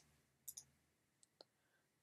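Near silence with faint computer mouse clicks: a quick pair about half a second in and a single fainter click near the end.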